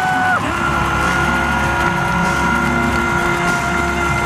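An arena PA announcer's voice holding one long drawn-out note on a player's name. It starts about half a second in and holds steady in pitch to the end, over arena music and crowd noise.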